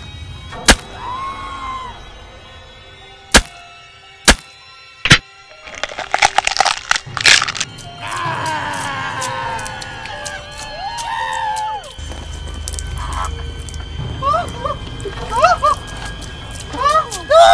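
Gore sound effects over music: several sharp cracks, then a wet, crackling squelch about six seconds in as a chest is torn open by gloved hands, followed by gliding pitched sounds.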